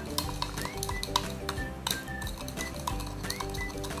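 Metal spoon stirring in a drinking glass, clinking irregularly against the glass several times a second as it works a thick, jelly-like mix of cooking oil and slimming drink.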